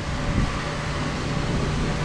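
Steady background hum with a faint, even high tone over a rushing noise; no single event stands out.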